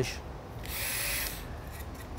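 Surgical pulse lavage handpiece triggered briefly, a short whirring hiss of under a second starting about half a second in, as it is used to clean out the reamed acetabulum.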